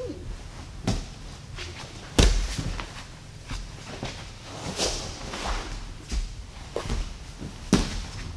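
Bodies and bare feet thudding on grappling mats, with gi cloth rustling, as two people grapple fast. There are several sharp thuds, the loudest about two seconds in and another near the end.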